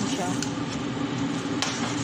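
A metal ladle in a steel cooking pot knocks sharply twice, about half a second and a second and a half in, over a steady low hum.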